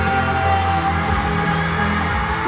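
Live pop ballad played through an arena sound system, with held keyboard notes, a steady bass line and a group member singing into a handheld microphone, heard from the crowd.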